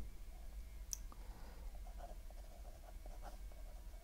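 Pen scratching faintly on paper as figures are written by hand, with one sharp click about a second in.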